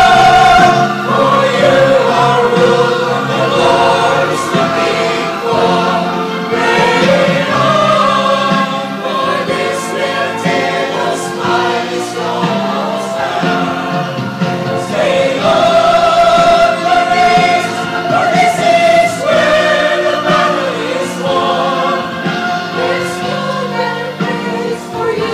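A mixed choir of men's and women's voices singing a gospel worship song, with long held notes. It is loudest on a sustained note at the very start.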